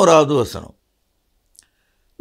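A man's voice finishing a spoken phrase, its pitch falling as it trails off about two-thirds of a second in, followed by silence with one faint click near the end.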